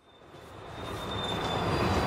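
A passing passenger train, its rumble and rail noise swelling up from silence over the first second and a half, with a thin high steady tone above it.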